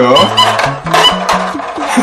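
Background music with a bass line stepping from note to note, and a voice trailing off right at the start.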